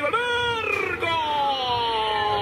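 A football commentator's voice holding one long, high drawn-out shouted vowel that slides slowly down in pitch.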